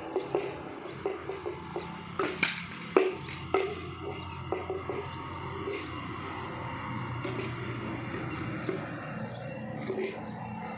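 A child's hollow plastic toy bat knocking on a stone-tiled floor and against a plastic ball: a string of sharp, irregular taps, thickest in the first four seconds and sparser after.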